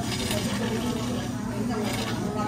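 Whipped cream dispenser piping cream onto an iced latte, over a steady low hum and background voices.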